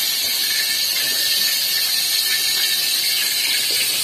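Chopped garlic and shallots frying in a little oil in a wok, giving a steady sizzle.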